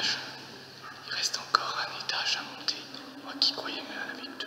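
A person whispering, over a faint low steady hum that stops about three seconds in.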